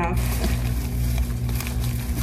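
Plastic shopping bag rustling and crinkling as hands rummage inside it, over a steady low hum.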